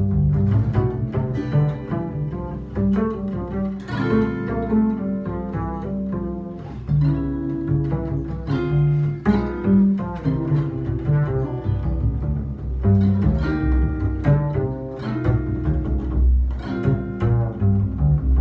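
Jazz duo of a Gibson archtop electric guitar and an upright double bass played pizzicato, performing a Latin jazz tune, with the plucked bass carrying the low line under the guitar.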